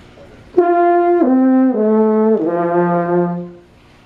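French horn played: four sustained notes stepping down in pitch, starting about half a second in, with the last and lowest note held longest before it fades out.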